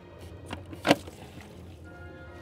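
A rubber coolant hose being handled over a plastic catch jug, with one sharp knock about a second in, as coolant is about to drain from the hose. Low background music runs underneath.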